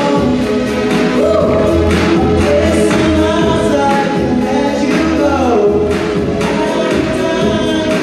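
A male singer singing live into a microphone over amplified backing music with a bass line, the melody gliding between notes.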